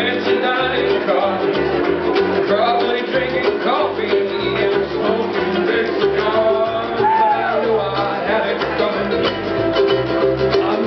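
Several ukuleles strumming together in a steady country rhythm, with a stepping bass line underneath and a gliding melody line on top.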